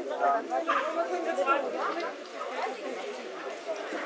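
Indistinct conversation: people talking near the microphone, with no clear words.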